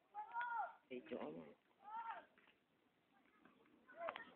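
Civet giving two short mewing calls about a second and a half apart, each rising then falling in pitch, with a lower, rougher sound between them.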